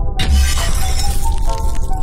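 Intro music with a deep bass hit and a glass-shattering sound effect that bursts in about a fifth of a second in, its crackle of falling shards running on under the music.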